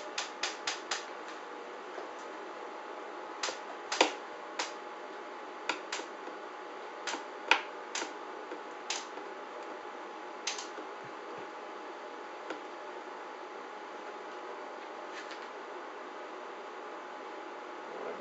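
Ratchet of a hand winch clicking as its handle is cranked to tension a line under load climbing past 500 pounds. It starts with a quick run of clicks, then single clicks spaced out over the next ten seconds, then only a couple of isolated clicks over a faint steady hum.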